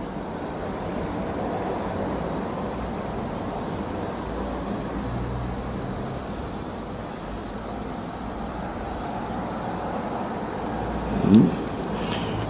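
Steady low background rumble with no speech, swelling slightly through the middle. A short vocal sound comes near the end.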